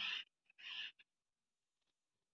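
A spoken word ends just after the start, followed by a short soft hiss and a faint click about a second in, then near silence.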